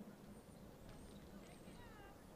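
Near silence: faint open-air stadium ambience, with faint distant voices and a few short, faint high chirps.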